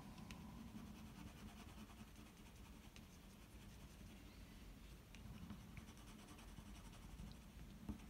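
Faint scratching of a pencil shading on paper, in short strokes with scattered small ticks.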